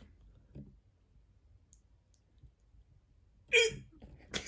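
A quiet room, then near the end a short, sudden burst of a person's laugh.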